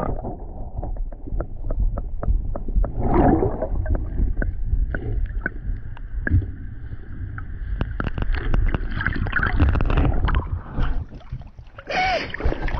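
Water sloshing and moving around a camera held underwater, heard muffled as a low rumble with many sharp clicks and knocks.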